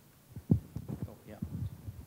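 Handling noise from a handheld microphone being passed from hand to hand: a series of low thumps and rubs, the loudest about half a second in.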